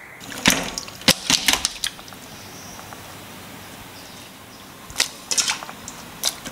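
Several short, sharp clicks and knocks of kitchenware being handled, in a cluster over the first two seconds and again about five seconds in, over a faint steady hiss.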